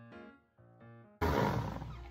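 Background music with steady keyboard notes, then a little over a second in a loud noisy whir from a countertop blender cuts in abruptly and fades.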